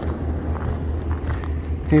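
An engine running steadily, heard as a constant low hum.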